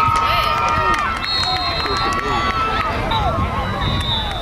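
Sideline crowd of youth football spectators shouting and yelling at once, with several long held yells, urging on a ball carrier breaking away on a run.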